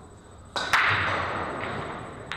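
Pool balls clacking: a sharp crack about half a second in, followed by a clatter that dies away over about a second.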